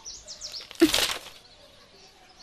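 Small birds chirping high and thin in the background, with a short, loud rustling burst about a second in.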